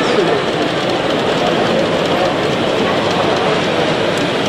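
An H0 model train running on the layout's track, heard over the steady babble of a crowded exhibition hall.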